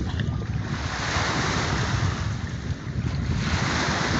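Wind buffeting the microphone, a fluttering rumble, over the steady wash of small waves on the lakeshore, which swells for a moment between about one and two seconds in.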